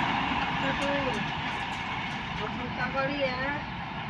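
Rolling noise of an express train's coaches fading steadily as the train speeds away, with people's voices over it.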